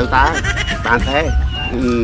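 A voice talking over background music, its pitch wavering up and down.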